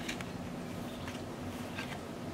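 Faint handling of a cardstock tea bag holder and its ribbon: a few soft light paper rustles and ticks over a steady low hiss.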